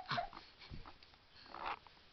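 Baby making brief vocal sounds in a few short, separate bursts: a sharp squeak at the start and a breathy burst a little past the middle.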